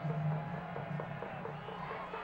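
Music playing over a football stadium's public-address system, with a low held note and short notes above it.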